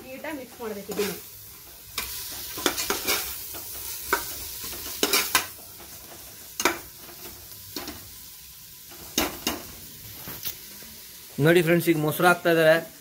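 Chopped vegetables sizzling in hot oil in an aluminium pressure cooker while a spatula stirs them. The spatula scrapes and knocks against the pot at irregular moments over a steady frying hiss.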